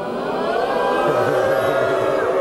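A short musical jingle: a sustained chord that swells in the first half-second and is held for about three seconds.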